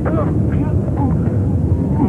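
A man's short vocal sounds, a few brief cries or breaths, over a constant deep rumble.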